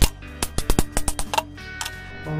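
A paper cup being torn and peeled away from a set wax candle: a quick run of sharp, irregular crackles and clicks, the loudest at the very start, over background music.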